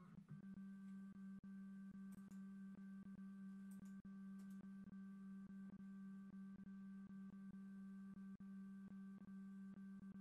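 Plustek OpticFilm 8200i film scanner running a prescan pass: a faint, steady low motor hum with a higher whine over it and light, evenly spaced ticks.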